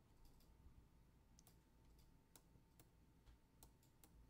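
Near silence, with about five faint, scattered clicks: a stylus tip tapping a pen tablet as handwritten numbers are entered.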